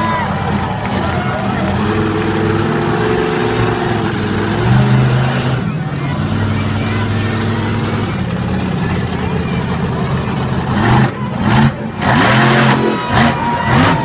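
Rammunition monster truck's engine running loud, the revs rising and falling as it drives. Near the end come several sudden loud knocks as it climbs onto a row of crushed cars.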